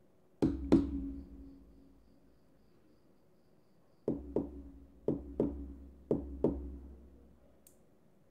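Fingertip knocks on a small loudspeaker cone used as the knock sensor of an Arduino secret-knock lock, each with a short ringing tail. First two quick knocks, which the lock rejects as a failed secret knock. Then six knocks in three quick pairs about a second apart, the stored secret knock that switches the device on, followed near the end by a faint click as the relay switches.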